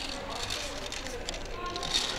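Background voices and children's chatter in a busy indoor play area, faint and indistinct, with no single loud event.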